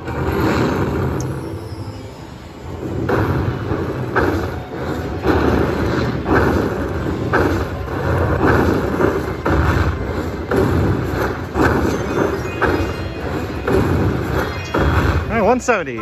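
Screaming Links slot machine playing its bonus-win celebration while the win total counts up: a rhythmic thumping beat, about one hit a second, from about three seconds in, with a sweeping glide near the end.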